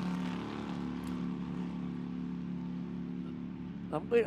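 GT3 race car engine running at a steady, low pace under a full-course yellow, a constant drone that does not rise or fall.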